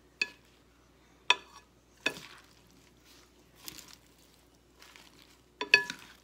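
Wooden salad servers tossing lettuce and seaweed salad in a large bowl: soft rustling of the leaves, broken by four sharp knocks of the servers against the bowl that ring briefly. The loudest knocks come about a second in and near the end.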